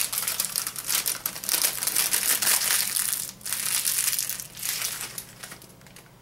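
Plastic packaging crinkling and crackling as it is handled, in irregular bursts with a brief pause about three and a half seconds in, dying down near the end.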